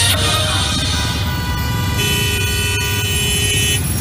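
Radio programme jingle music with a steady low beat; about two seconds in, a chord of several steady tones comes in and is held until just before the end.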